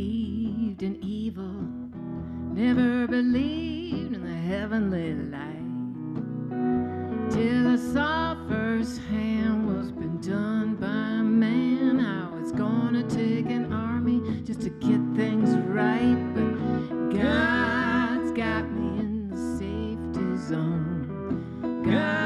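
A woman singing a folk song live, accompanying herself on a Gibson acoustic guitar.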